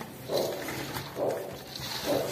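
Hands kneading and squeezing a wet food mixture in a bowl, a soft squelch with each push, about once a second.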